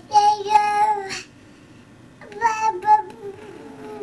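Baby vocalizing in two drawn-out, high-pitched, sing-song calls: one about a second long at the start, and a second one starting about two seconds in.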